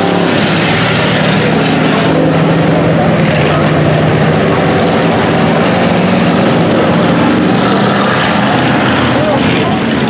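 Several dirt-track cruiser-class race cars running their engines at speed around the oval, a loud, steady engine drone with no letup.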